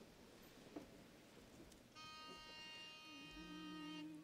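Near silence with faint room noise. About halfway through, a faint steady buzzing tone starts suddenly, and a lower hum joins it near the end.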